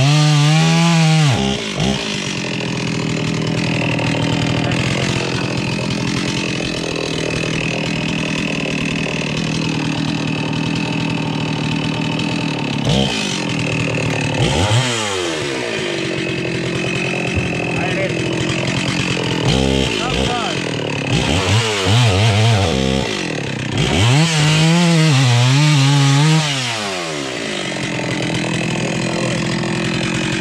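Two-stroke chainsaw running near idle, revved up and back down several times: briefly near the start, a few times in the middle, and longest about two-thirds of the way through.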